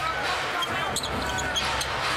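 A basketball being dribbled on a hardwood court, with repeated short bounces, a few brief high squeaks of sneakers on the floor, and arena crowd noise behind.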